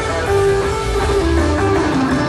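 Rock band playing live, taped from the audience: a lead line holds sustained notes that step from pitch to pitch over bass and drums.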